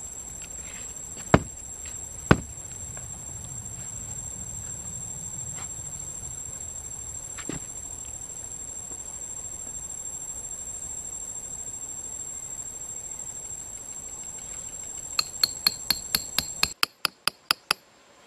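A steady, high-pitched insect drone, broken by two sharp knocks early on and, near the end, a rapid run of about a dozen sharp clicks at about four a second, where the background drone cuts out.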